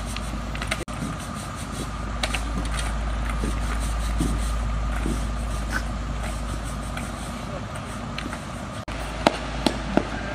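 Stiff push brooms scraping and sweeping across wet asphalt, with scattered short clicks and scrapes, over the steady low rumble of an idling engine.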